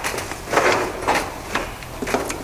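Woven fibreglass exhaust heat wrap rustling and scraping as it is handled and wound around an exhaust manifold, in a run of uneven rustles with a few sharper scrapes.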